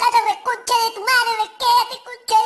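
The Talking Tom Cat app's cartoon cat voice: a person's speech played back raised in pitch, high and squeaky, in short phrases.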